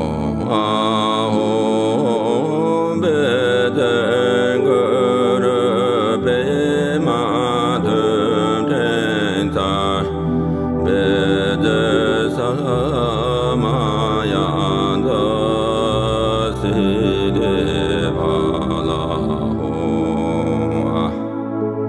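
A Tibetan Buddhist mantra chanted by a male voice in a slow, melodic line, over a new-age keyboard backing of sustained bass notes that shift to a new pitch every few seconds.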